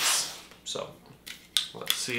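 A few light clicks and knocks from a Funko Soda can being picked up and handled in the hands, between snatches of speech.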